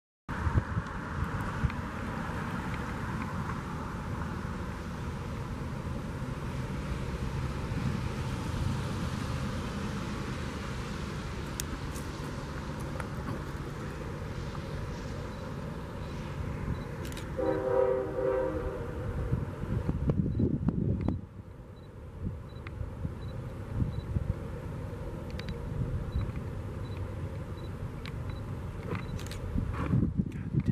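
A Norfolk Southern freight train's diesel locomotive approaching, its engine and wheels on the rails making a steady low rumble, with one short blast of its horn a little past halfway.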